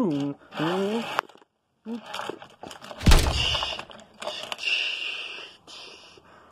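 A person's voice making vroom-like engine noises for a toy car race, then a sharp knock about three seconds in, followed by a rough hissing noise.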